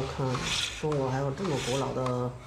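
A man speaking Chinese, with the rasping scrape of a hand-held cutter against wood turning on a foot-powered lathe underneath.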